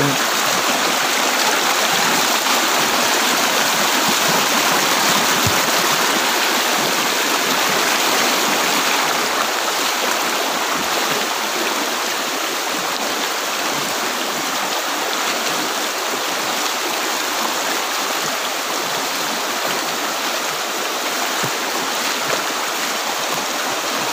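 Stream water rushing and splashing over rocks in a steady, even rush.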